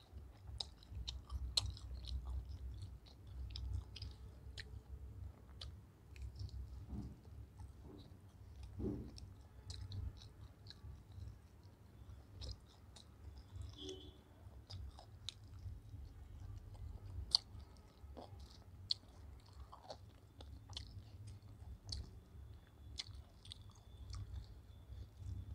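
Close-up chewing of fried chicken: many short, irregular wet mouth clicks and smacks as the meat is bitten and chewed, over a low steady rumble.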